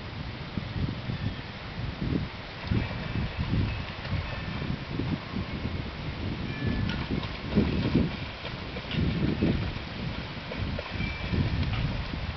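Wind buffeting the microphone in irregular low gusts, with faint splashing from a Border Collie swimming in a pond.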